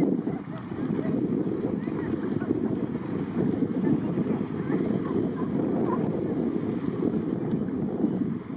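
Steady low rumble of wind buffeting the microphone, mixed with the motor and wake of a rigid inflatable boat towing an inflatable tube close by.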